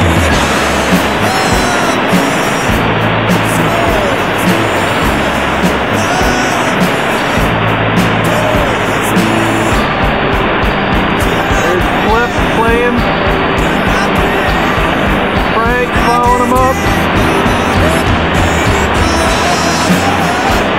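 Steady loud rush of a whitewater rapid, with background music carrying a slow bass line underneath.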